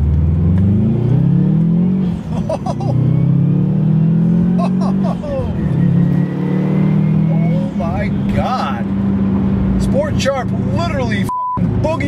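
Turbocharged Subaru Legacy GT's 2.5-litre flat-four accelerating hard in Sport Sharp mode, heard from inside the cabin. The engine note climbs, drops at an upshift about two seconds in, climbs again, then settles to a steady drone after the next shift.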